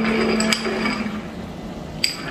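Carbonated water poured from a glass bottle over ice into a glass, fizzing, with sharp clinks of ice and glass. A low steady hum sounds for about the first second.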